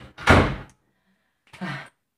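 Wooden panel door shut hard with one loud thud about a quarter second in, followed by a light click.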